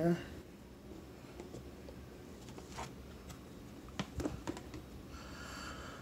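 Faint clicks and light scrapes of a plastic storage box's snap-on lid being unlatched and lifted off, with a single click about halfway through and a short run of clicks a second later.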